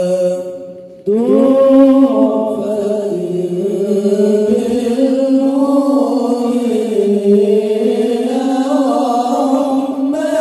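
Men's voices chanting sholawat, an Islamic devotional song praising the Prophet, unaccompanied and amplified through microphones. A held note dies away in the first second, then a new long, winding phrase begins with a rising swoop and carries on.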